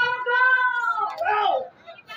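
A woman's voice over a stage microphone drawing out one long, high call that rises slightly and falls over about a second, followed by a few quick words that trail off before the end.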